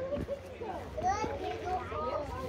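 Children's voices: a young child vocalising without clear words, with other children's chatter in the background.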